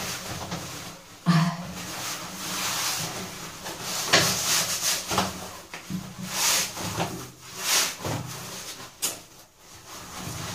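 A Rip Curl neoprene wetsuit rustles and rubs against skin as it is tugged up over the legs and hips. The sound comes in irregular bursts of handling noise.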